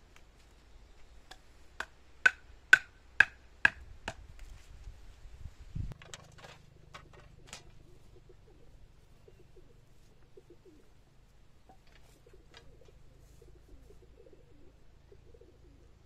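A run of about seven sharp knocks, roughly two a second, each with a short ring, as stakes are driven in to pin a tarp pond liner. A few lighter knocks follow shortly after.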